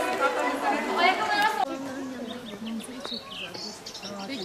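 People talking at once without clear words, with children's high voices. About a second and a half in the sound changes abruptly to a lower adult voice with a few brief high chirps.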